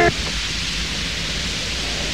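A held music chord cuts off right at the start, leaving a steady hiss of the old analogue recording with no music.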